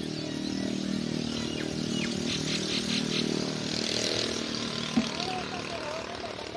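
An engine running steadily with a low hum, with a sharp knock about five seconds in.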